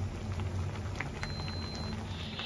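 Sinigang broth with shrimp and vegetables simmering in a steel wok: scattered soft bubbling pops over a low steady hum.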